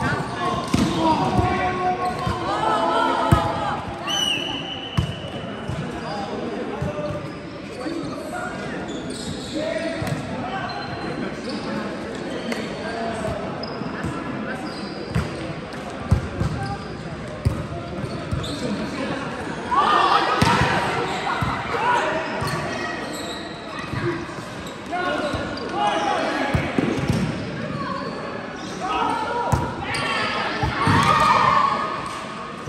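Volleyball play in a large sports hall: repeated thuds of the ball being hit and striking the court, with players' voices calling out, loudest near the start, about two-thirds through and at the end.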